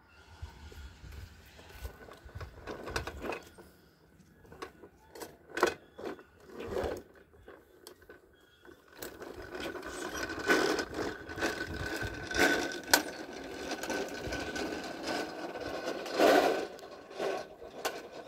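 Plastic toy push lawn mower rolled over brick pavers, its wheels and mechanism clicking and rattling. Scattered knocks at first, becoming a denser, steadier clatter from about halfway through.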